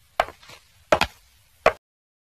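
A series of sharp knocks at an even, walking-like pace, three in two seconds, each a quick double strike, stopping near the end.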